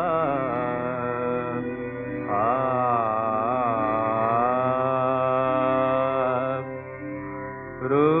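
Instrumental introduction of a Bengali modern song: a melodic instrument line with wavering vibrato, played in phrases, with a fuller phrase entering about two seconds in. The sound is narrow-band, with no top end.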